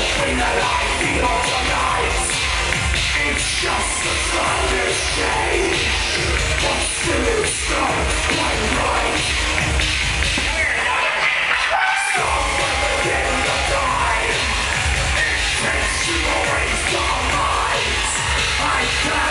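Loud live band music with a pulsing heavy bass beat and no singing. About ten seconds in, the bass drops out for a moment and comes back with a hit about twelve seconds in.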